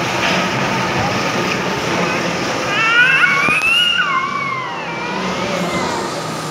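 Steady din of an indoor bumper-car rink, with a low hum from the running cars. Between about three and four and a half seconds in, a high voice calls out in a long cry that rises and then falls.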